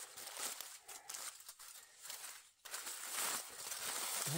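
Aluminium foil crinkling as it is folded and rolled up by hand. It goes quieter for a moment just past halfway, then crinkles again.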